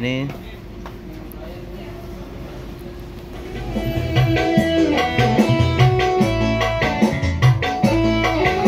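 Recorded music from a smartphone played through a mixing desk and loudspeakers as a test of the mixer's outputs 3 and 4. It is faint at first, then comes up to full level about four seconds in as the fader is raised.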